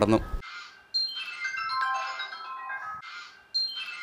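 Background music: a short melody of high, bell-like notes, after a man's voice trails off about half a second in.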